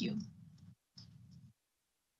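A woman says the last word of "thank you" over a video call. Then comes faint low noise in two short patches, which cuts off abruptly to dead silence for the last half second.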